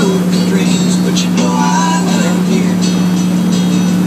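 Motorboat engine running steadily while under way, a constant low drone at one pitch.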